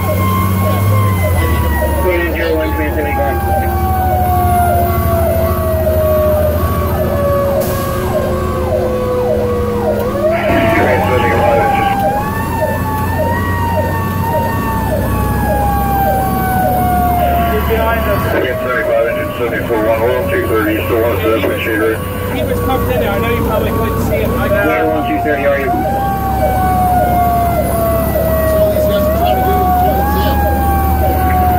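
Federal Q mechanical siren of a fire rescue truck, heard from inside the cab. Its wail winds slowly down in pitch over many seconds and is brought quickly back up about a third of the way in, again past the middle, and once more near the end. A steady low truck drone runs under it.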